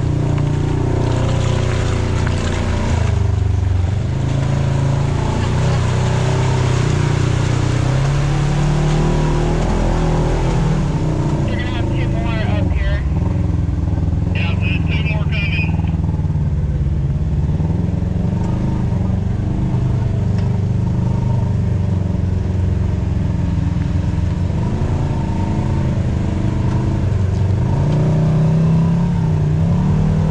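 Side-by-side UTV engine running at low throttle, its pitch rising and falling gently as the machine crawls a rutted dirt trail. Short high chirps come in about twelve and fifteen seconds in.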